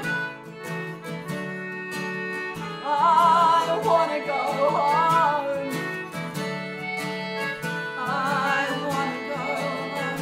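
Live folk music: acoustic guitar strumming with concertina chords held underneath, and a woman's voice singing with vibrato from about three seconds in and again near the end.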